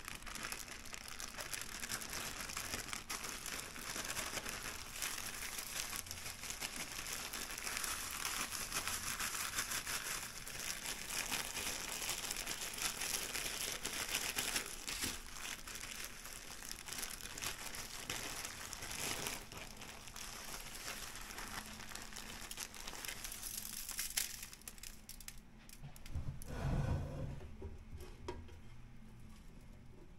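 A thin plastic bag crinkling and rustling as a pork chop is shaken and worked around inside it in dry breading mix. It goes on for most of the stretch, thins out near the end, and a short low thud comes close to the end.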